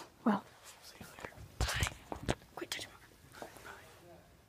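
Hushed whispering voices in short, broken bursts, with a few soft clicks.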